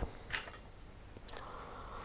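Faint handling noise at a fly-tying bench: a short light clink or rustle about a third of a second in, then a soft scraping rustle near the end, as the tying tools are picked up for the whip finish.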